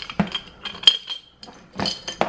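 Small metal jewelry pieces and trinkets clinking against each other and against the sides of a glass jar as a hand rummages through them: a string of light, irregular clinks, the sharpest about a second in.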